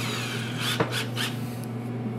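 Cordless drill being handled as a Phillips bit is fitted: rubbing and ratcheting at the keyless chuck, with a sharp click just under a second in and a few short scrapes after it.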